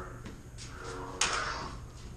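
Two combat lightsabers clashing once, about a second in: a sharp crack that fades out over about half a second.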